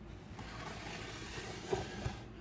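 Plastic tub sliding out of a reptile rack: a scraping hiss lasting about a second and a half, ending in a couple of light knocks.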